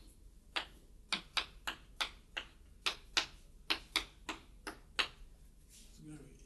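Chalk tapping and knocking on a chalkboard as a diagram is drawn: an irregular run of short, sharp taps, about two or three a second.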